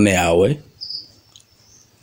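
A man's voice trailing off about half a second in, then a faint, thin high-pitched chirp in the background.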